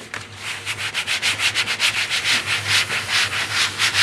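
Bamboo-sheathed printmaking baren rubbed in quick, even strokes over paper laid on an inked gel printing plate, a scratchy rustle that builds up over the first second and then goes on steadily at several strokes a second. This is the burnishing that pulls the monoprint off the plate.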